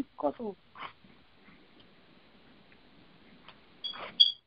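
A man's voice speaking a few short words in the first second, then faint steady hiss. A brief high electronic beep sounds near the end.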